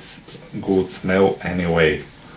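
A wet baby wipe rubbed around the inside of a ceramic mug to clean off chocolate residue, squeaking in three short strokes in the second half.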